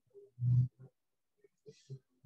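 A person's voice: one short, low voiced sound about half a second in, then a few faint brief ones and a breathy hiss near the end.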